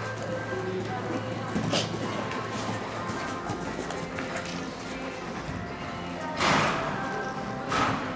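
Music playing in the background, with the hoofbeats of a horse moving over the arena's sand footing as it passes close by. Two short, loud rushing bursts of noise come near the end.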